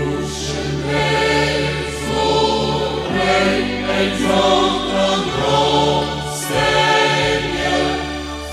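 Choir singing a religious song over sustained instrumental accompaniment with held low bass notes; the voices come in right at the start after an instrumental passage.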